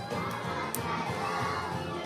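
A large group of young children's voices singing and shouting together in a song, loud and steady.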